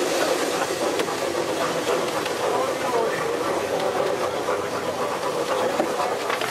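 Running noise of the 1908 GWR steam rail motor heard from inside its passenger saloon: a steady rumble and rattle of the carriage moving along the track, with passengers' voices over it.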